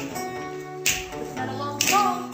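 Live guitars playing an instrumental passage, with two sharp finger snaps about a second apart, the second near the end.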